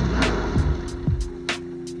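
Bobcat compact track loader's engine running down after the key is switched off, its low rumble fading out within the first second. Background music with steady held notes comes in after that.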